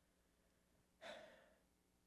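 Near silence, broken about a second in by one short, audible breath from a man.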